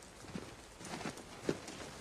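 Faint, soft footsteps: a few irregular knocks and scuffs about half a second apart.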